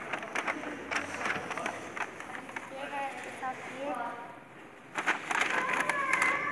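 Paper takeaway bag rustling and crinkling in short bursts as it is handled and opened, busiest about a second in and again near the end, with brief voices in the background.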